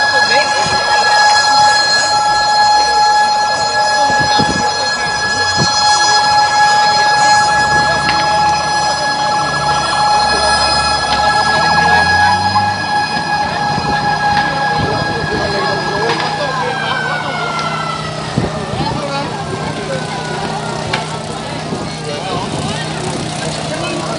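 A siren holds one steady tone for about sixteen seconds, then winds down, falling in pitch over the last several seconds. Crowd voices are underneath.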